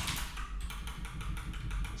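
Computer keyboard typing: a run of quick, irregular key clicks.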